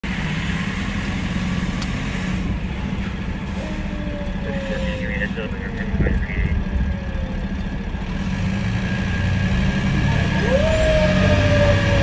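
Fire engine's engine running, heard from inside the cab, with its siren giving a short falling tone a few seconds in, then winding up sharply about ten and a half seconds in and slowly falling in pitch.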